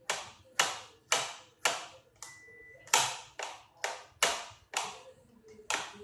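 Small knife chopping strawberries on a cutting board: sharp knocks of the blade striking the board, about two a second.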